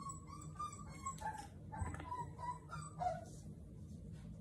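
Four-week-old American Bully puppies whimpering and yipping in a run of short, high calls, the last and loudest one a little lower, about three seconds in.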